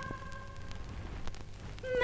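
A quiet break between phrases of a recorded Javanese song. A woman's held sung note dies away in the first part, leaving faint accompaniment with a few soft clicks, and the voice comes back in at the very end.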